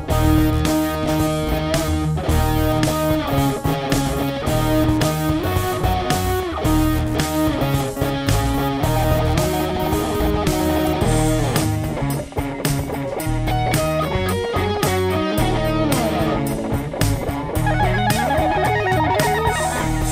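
Instrumental rock jam track in a dark, minor-pentatonic style: electric guitar over a steady beat.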